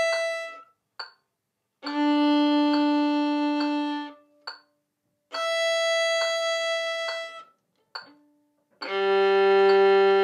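Violin playing long, steady bowed notes on open strings, each about two seconds long with a short rest between: a note ending just after the start, then a mid-range note, a higher one, and a low one starting near the end. A soft metronome tick marks the beat throughout.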